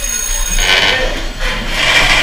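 Rubbing and scraping noises in two spells, one about half a second in and another near the end.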